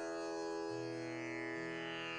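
Steady tanpura drone with many sustained overtones; a lower string sounds anew about two-thirds of a second in.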